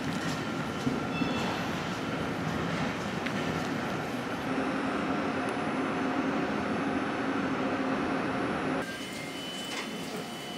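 Nagasaki streetcar in a tram depot, humming steadily. The hum has a low drone and a few faint high squeaks, and steps down a little about nine seconds in.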